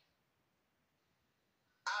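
Near silence between stretches of speech; a voice starts again near the end.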